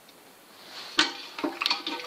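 A sharp metallic clink with a short ring about a second in, then a few lighter metal clicks, as metal is handled at the jaws of a hand-operated sheet-metal shrinker-stretcher.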